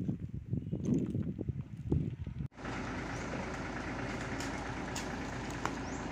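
Low knocks and rustling of a handheld camera being carried, then after a cut about two and a half seconds in, a steady truck engine idling.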